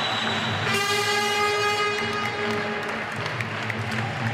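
End-of-round horn sounding once, about three-quarters of a second in: a single steady tone that holds for about a second and then fades, marking the end of the round. It plays over background music and crowd noise.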